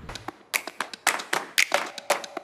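A rapid, uneven run of sharp clap-like hits, several a second, some with a brief ring after them.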